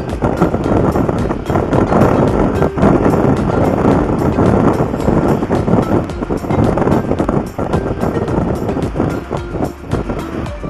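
Loud riding noise from a Yamaha Mio Gravis scooter under way at road speed: engine running with wind rushing and buffeting over the camera microphone.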